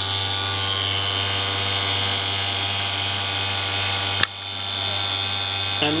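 Steady buzzing hum of a running vacuum sputtering rig, with its vacuum pump and high-voltage supply on while the silver plasma burns. A single sharp click comes about four seconds in, and the hum dips for a moment and then recovers.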